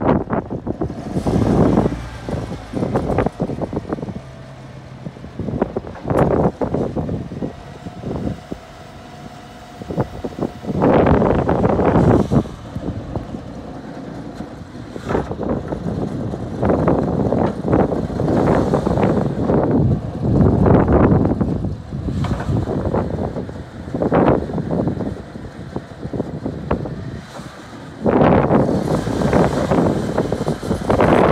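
Engine of a Clark forklift running as the machine drives slowly forward, its sound rising and falling in irregular loud surges.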